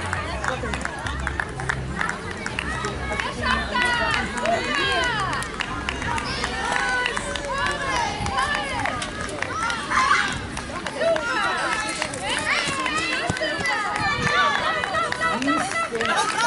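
Many overlapping voices of spectators talking and calling out at once, with no single voice standing out. A low rumble runs underneath and stops about two-thirds of the way through.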